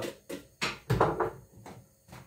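A few knocks and clatters of kitchen things being handled and set down on a counter. The loudest is a dull thump about a second in.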